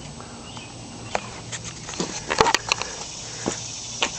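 Scattered light clicks and knocks over a faint steady hum: handling noise as the camera is moved from under the car up to the engine bay.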